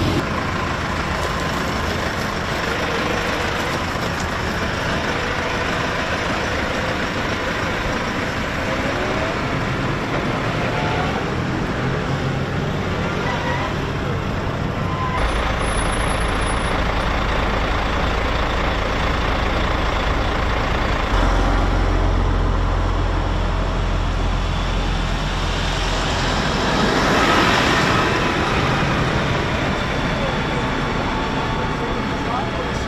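Several large farm tractors' diesel engines running as they drive past and idle in a convoy, a steady low engine hum under traffic noise. The hum strengthens about halfway through, and a passing tractor swells louder near the end.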